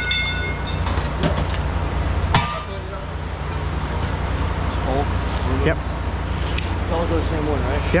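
Scrap metal being unloaded onto a steel platform scale: a ringing metallic clang at the start and a sharp knock about two and a half seconds in, over a steady low machinery hum.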